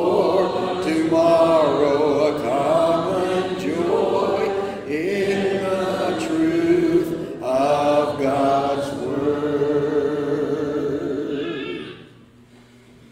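Congregation singing a hymn a cappella, many voices together with no instruments; the singing stops shortly before the end.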